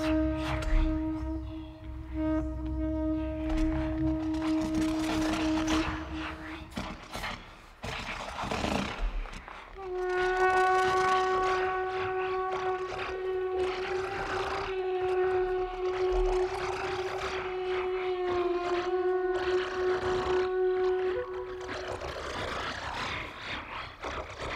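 Ambient brass-and-electronics music: a trumpet holds long single notes with electronic processing, over a low drone and airy noise. The first held note stops about six seconds in, and a new sustained tone enters about ten seconds in and holds for some ten seconds.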